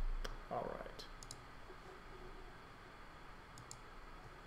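Computer mouse clicks: a single sharp click, then a quick pair about a second in and another quick pair near the end.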